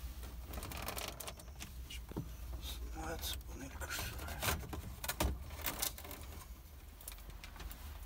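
Scattered clicks and light rattles of hands and a tool working at the truck cab's overhead radio panel, over a low steady hum in the cab.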